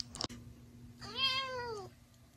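A domestic cat gives a single meow about a second in, its pitch rising and then falling over nearly a second. A couple of faint clicks come just before it.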